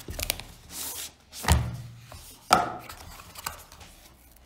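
Thin white cardboard box being opened by hand: paper flaps rustling and sliding against each other, with two sharp knocks about a second and a half in and again a second later.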